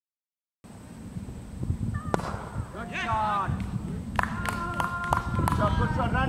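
Cricket bat striking the ball: a single sharp crack about two seconds in, followed by players' shouting voices and a few more sharp knocks.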